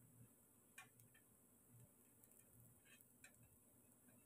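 Near silence: faint room tone with a few faint ticks, two about a second in and two more around three seconds.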